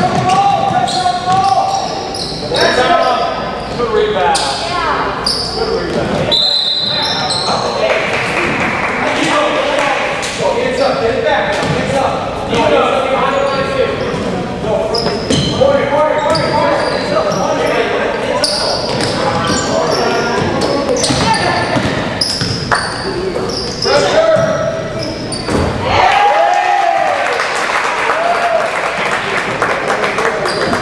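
Basketball game in a gym: a ball bouncing on the hardwood court and players' and spectators' voices, echoing in the large hall. A short, high, steady whistle sounds about six and a half seconds in.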